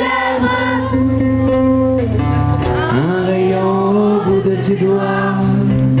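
A live band playing, with a male singer holding long sung notes over steady bass.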